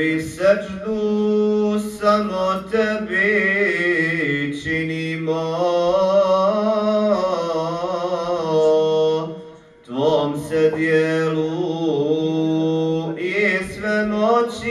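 Unaccompanied male voice chanting a slow, ornamented Islamic devotional melody with long held notes, pausing briefly twice, about five and ten seconds in.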